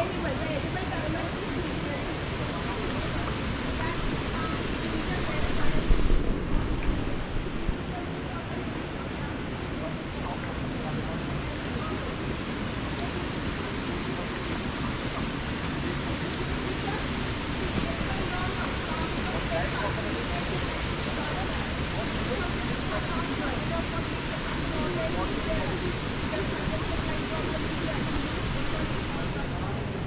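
Steady rushing noise, with a short burst of low rumble about six seconds in.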